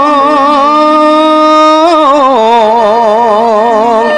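A voice singing long held notes with a strong, even waver in a Javanese wayang kulit vocal line, rising briefly and then dropping to a lower held note about halfway through, with a fainter accompanying line beneath.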